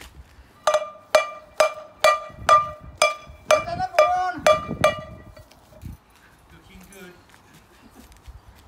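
A metal frying pan struck over and over, about two ringing clangs a second, around ten in all, stopping about five seconds in.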